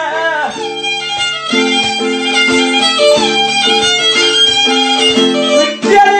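Instrumental break in a song, between sung lines: a violin plays the melody over held chords and a steady beat, with no singing.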